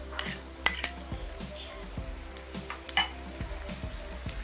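Metal spoon stirring sliced shallots frying in oil in a small pan, clinking against the pan a few times, loudest just under a second in and again about three seconds in, over a faint sizzle.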